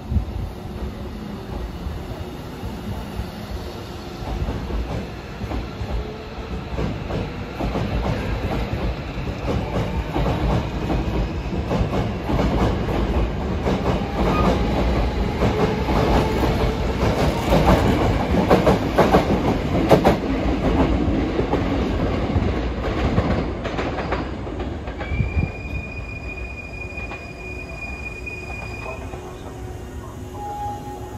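Hankyu 1000-series electric train pulling out along the platform: a rumble and clatter of wheels over rail joints that builds as the cars pick up speed and pass close by, then eases off. Near the end a steady high squeal is held for a few seconds.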